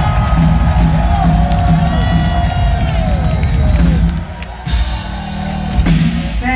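Live rock band playing loudly, with sliding notes over bass and drums, while a crowd cheers. The playing drops back about four seconds in.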